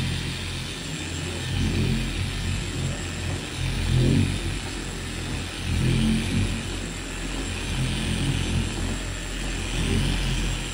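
Bauer 6-inch long-throw random-orbit (DA) polisher running with a foam polishing pad on a car's painted hood. Its steady motor hum swells and eases a few times as it is worked across the panel.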